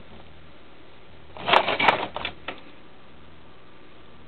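Hands rummaging through a plastic bag of cables: a short burst of rustling and clicking about a second and a half in, lasting under a second, over a steady low hum.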